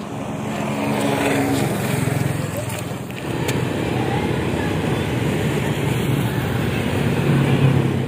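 Street sound with a motor vehicle engine running close by and indistinct voices, broken by a short dip about three seconds in.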